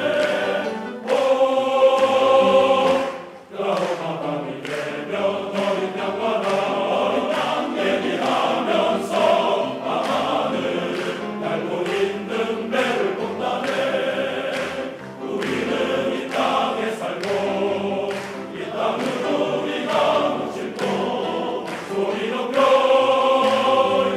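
Large male choir singing in parts: sustained chords with a brief break about three seconds in, building to a loud held chord near the end.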